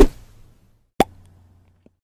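Two sharp hit sound effects from an animated logo outro, about a second apart, each fading quickly, with a faint tick near the end.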